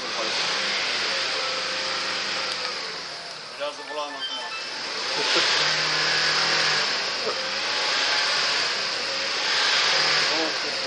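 Nissan Pathfinder's engine revving hard under load with its wheels spinning in deep mud, the SUV stuck and barely moving; the noise grows louder about halfway through. It is the struggle that, by the uploader's account, cost the Pathfinder its clutch.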